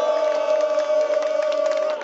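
Football supporters chanting, a crowd of voices holding one long steady note that breaks off near the end, with many sharp slaps of hands high-fiving mixed in.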